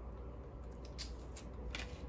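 Faint soft clicks and light rustling over a low steady hum, a few small ticks about a second in and again near the end.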